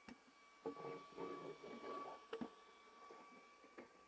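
Faint whir of a cordless electric screwdriver driving the screws of a table pedestal's metal base plate, tightening a loose table, with a few short sharp clicks.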